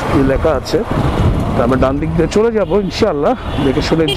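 A man talking in Bengali, with wind and road noise from a moving motorcycle in city traffic underneath.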